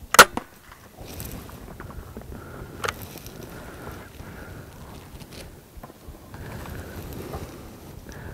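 A TenPoint Nitro 505 crossbow firing: one loud, sharp crack just after the start. A second, smaller sharp snap follows about three seconds later, over low rustling.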